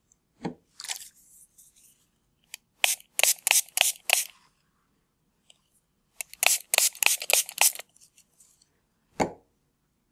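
Small trigger spray bottle misting water onto pieces of edible lace to soften them, in two runs of five or six quick sprays a few seconds apart. A single soft knock near the end.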